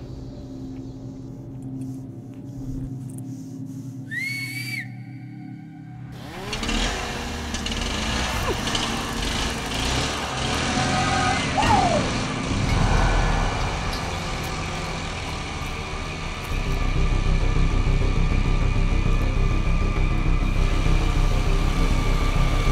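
Horror film score: a low, ominous drone with one short rising-and-falling tone about four seconds in. Around six seconds in it swells suddenly into dense, tense music, which grows louder and heavier near the end.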